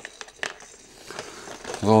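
A few light plastic clicks and taps as a plastic jar full of plastic baby toys and rattles is handled.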